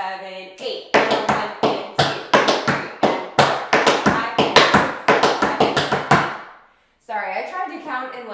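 Tap shoes' metal taps striking a wooden tap board in a fast, dense run of riff strikes for about five seconds, ringing with room echo. The run then stops abruptly.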